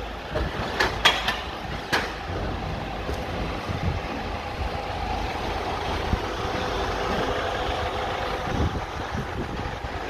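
A vehicle engine idling steadily, a low continuous hum, with a few sharp knocks in the first two seconds.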